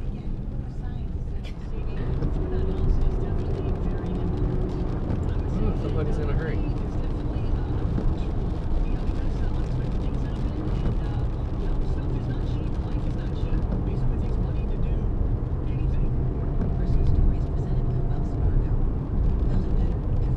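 Car cabin noise while driving at road speed: steady tyre and engine noise.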